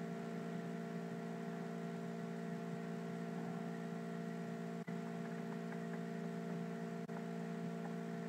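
Steady electrical hum with a layer of hiss from a poor-quality microphone recording chain, dropping out briefly twice near the middle.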